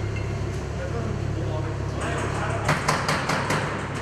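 A quick run of six or seven sharp knocks on a door, starting about halfway through, over a steady low mechanical hum.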